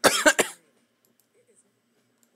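A person coughing twice in quick succession, close to the microphone, over in about half a second.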